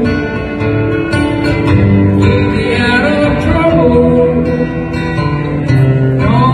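Acoustic guitar strummed live with a man singing along into a microphone.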